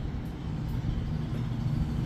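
A steady low hum with a few faint clicks over it.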